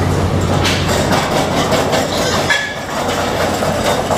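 Steady machine hum and rumble of a hog barn, with repeated metallic clanks and knocks from pen gates and a wheeled cart rattling over the slatted floor.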